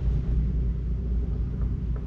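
Steady low rumble with no distinct events.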